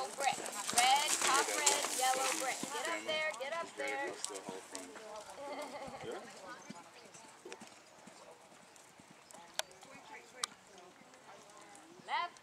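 Hoofbeats of a horse cantering on sand arena footing, loudest in the first few seconds and fading as the horse moves away.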